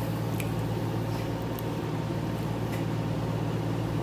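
A steady low mechanical hum with a few faint, light clicks.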